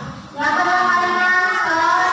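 A boy singing into a handheld microphone, holding long melodic notes; the voice breaks off briefly at the very start, then comes back in.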